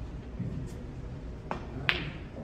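Snooker cue tip striking the cue ball with a sharp click, then a louder click of the cue ball hitting an object ball under half a second later.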